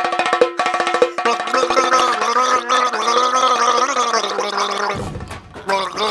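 A man's voice singing a wordless tune into a handheld microphone. It opens on one steady note pulsed rapidly, then from about a second in moves into a wavering, drawn-out melody, with a short break near the end.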